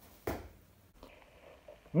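A small tasseled bo-shuriken striking the target with one short thud about a quarter second into the throw, followed by a faint click.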